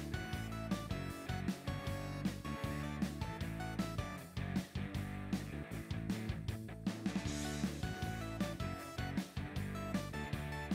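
Quiet background music with held notes and a steady beat.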